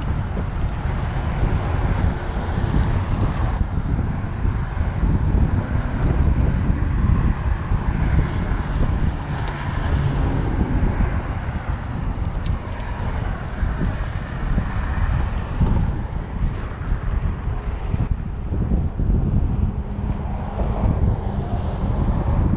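Steady wind buffeting the microphone of a camera worn by a cyclist riding at speed, heard mostly as a low rumble.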